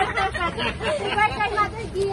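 Women's voices talking and laughing, overlapping in lively chatter.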